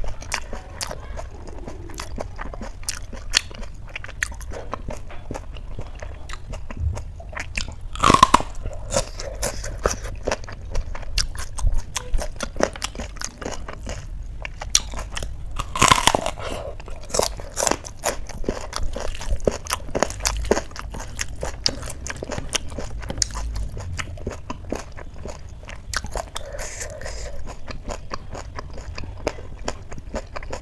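A person chewing and crunching hand-fed mouthfuls of rice and fried vegetables, with many small wet mouth clicks. There is a louder bite about eight seconds in and another as a handful goes into the mouth about sixteen seconds in.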